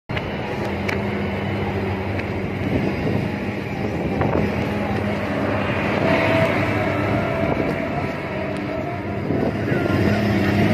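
Truck engine running steadily under way with a low, even hum, heard from inside the cab together with road and wind noise.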